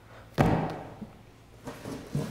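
A single thud of a shrink-wrapped paperback manga volume being set down on a hard surface, about half a second in, followed by faint handling sounds.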